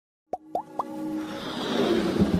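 Animated logo intro sound effects: three quick pops, each sliding upward in pitch, then a swelling whoosh with held tones that builds steadily louder into an electronic music sting.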